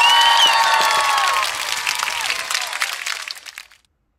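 A recorded crowd applause-and-cheering sound effect, many hands clapping with whooping voices. It cuts in suddenly and fades out about three and a half seconds in.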